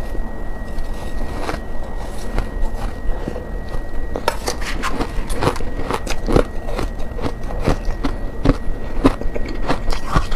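Freezer frost being bitten and chewed close to the microphone: sparse crunches at first, then from about four seconds in a dense run of crisp crunches, several a second.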